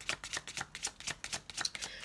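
A tarot deck being shuffled by hand: a quick, even run of card flicks, several a second.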